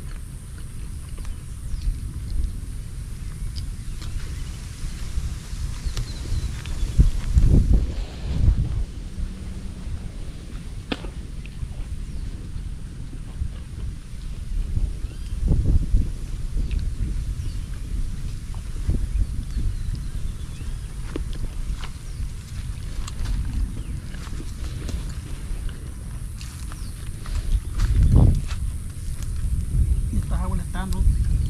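Wind buffeting the microphone: a steady low rumble that swells in gusts, strongest about a quarter of the way in, about halfway and near the end.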